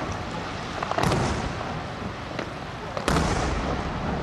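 Aerial cylinder firework shells bursting overhead: two loud bangs about two seconds apart, each trailing off in a rolling echo, with a few smaller cracks between.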